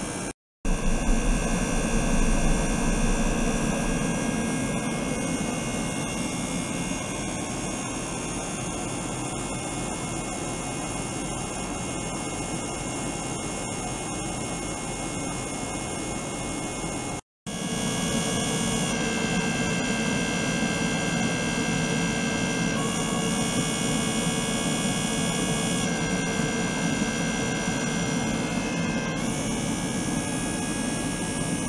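Small electric pump running steadily, circulating water through tubing into a plastic tank, with a set of steady high whining tones over its hum. The sound cuts out completely twice, briefly: about half a second in and about seventeen seconds in. After the second break the high tones change.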